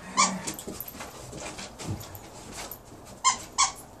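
Dog playing tug-of-war on a rope toy, with short sharp sounds about a fifth of a second in and twice in quick succession near the end.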